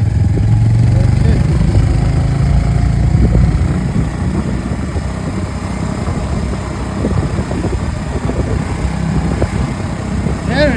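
Motorcycle engine running as the bike rides along: a steady low hum for the first three or four seconds, then a rougher, slightly quieter rumble.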